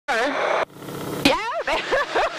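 Talk over the aircraft intercom with the steady drone of a Harvard's radial engine and the airflow under it, heard from inside the cockpit. The talk breaks off for about half a second a third of the way in, leaving only the engine noise.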